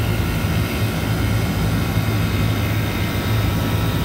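Walk-in freezer condensing unit running just after restart: the hermetic compressor's steady low hum under the even rush of air from its two condenser fans. The compressor is running again after its thermal overload reset, with head pressure climbing.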